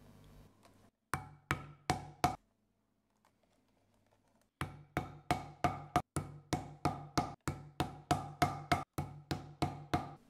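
A metal hammer striking rivets through leather laid on a stone slab, setting the rivets. There are four sharp, briefly ringing blows, a pause of about two seconds, then a steady run of blows at about three a second.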